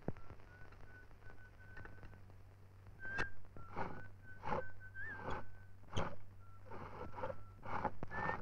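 A man whistling a slow, nearly level tune in held notes, while metal tools knock and clank about eight times against a ship's engine under repair after it has broken down.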